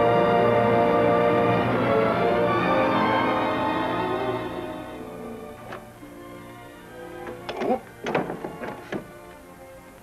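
Orchestral film score with sustained string chords swells in loudly, then fades down over the first half. Later a few short, sharp sounds stand out over the quieter music, the loudest about eight seconds in.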